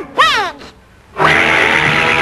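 Donald Duck's squawking cartoon voice lets out a short angry cry. After a brief pause, a loud sudden burst of cartoon score and noise breaks in about a second later and carries on.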